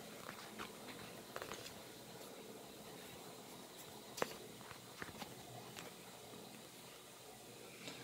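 Faint handling noise: a few scattered light clicks and taps with soft rustling, the sharpest click about four seconds in.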